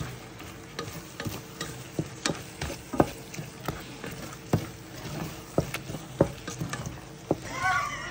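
Corned beef with beaten egg and green onion sizzling in a stainless steel pan while a wooden spatula stirs it, knocking and scraping against the pan at irregular intervals, about one or two times a second.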